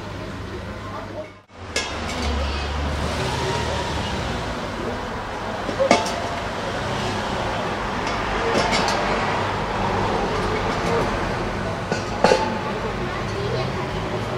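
Indistinct voices in a steady hubbub, with two sharp clinks of glass, about six seconds apart. The sound drops out briefly near the start.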